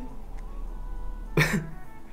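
A single short cough from a person about one and a half seconds in, over faint steady background music.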